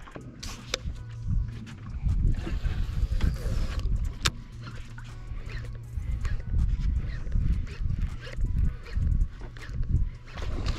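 Baitcasting reel being cranked to retrieve a lure, with an uneven low rumble of handling noise and scattered light clicks.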